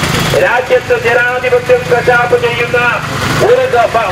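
A man's voice speaking continuously over a low, steady hum.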